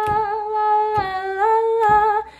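A woman's voice singing a folk-song melody without words and unaccompanied, in a few long held notes with short breaks between them.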